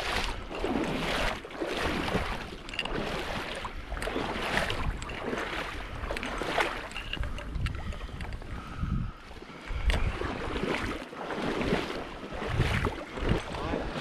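Shallow flooded-timber water sloshing and swishing in repeated surges, about one a second, as a hunter in waders wades through it.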